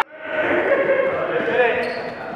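A basketball dribbled on a hardwood gym floor during a game, with players' indistinct voices echoing in the hall.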